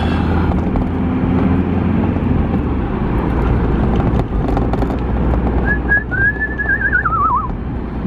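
Steady engine and road rumble inside a van's cab at cruising speed on a wet road. Near the end, someone whistles a short phrase, wavering and then sliding down in pitch.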